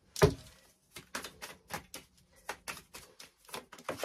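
Tarot cards being handled off the deck: a sharp card snap just after the start, then a run of quick, irregular clicks and taps as cards are slid and flicked.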